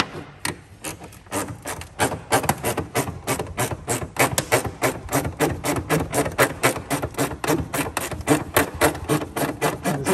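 Hand ratchet wrench worked back and forth in quick short strokes, making an even run of sharp clicks about four or five a second.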